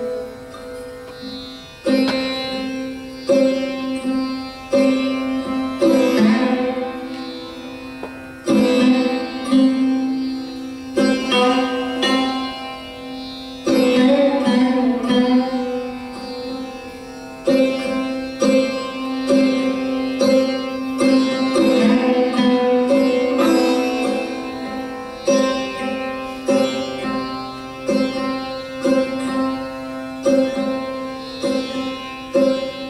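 Sarod played solo, without tabla: single plucked notes struck at uneven intervals, each ringing and fading, some with pitch slides, over a steady drone.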